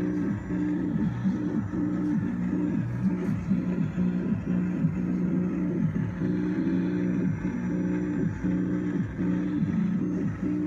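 Eurorack modular synthesizer patch: a Doepfer A-196 phase-locked loop tracking a heavily frequency-divided signal (an RCD and a Doepfer A-162 trigger delay used as dividers), giving a dense cluster of low tones that keep sliding and jumping in pitch, with a Memory Man delay thickening it. The recording is rough, by the uploader's own account.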